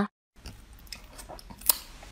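Quiet close-up eating sounds from a bowl of snails in their shells, with faint small clicks and one sharp click near the end, after a short silence at the start.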